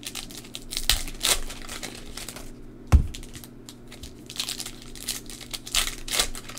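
Foil baseball-card pack wrappers crinkling and tearing as they are opened by hand, in irregular crackly bursts. A single dull thump about three seconds in.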